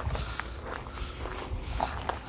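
Footsteps crunching on loose gravel at a walking pace, as irregular short crackles over a low rumble.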